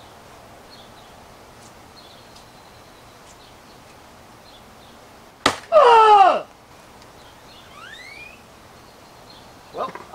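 An obsidian-tipped spear thrust into a cold-rolled steel samurai breastplate: a single sharp crack about five and a half seconds in as the obsidian point chips and shatters on the steel, followed at once by a loud yell from the thrower, falling in pitch.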